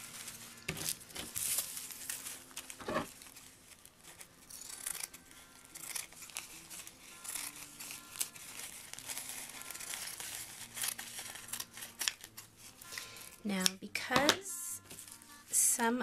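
Scissors snipping through a clear-tape-covered strip, with the crinkle and rustle of the tape and its backing sheet being handled, in short irregular bursts. Soft acoustic guitar music plays underneath.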